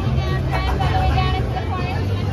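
People's voices, unclear chatter, over a steady low rumble of background noise.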